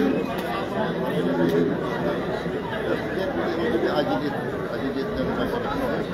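Indistinct chatter of several people talking close to the microphone, with no single clear voice.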